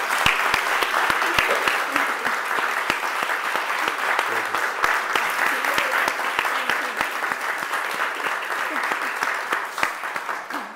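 Audience applause: a steady round of many hands clapping that begins to die away near the end.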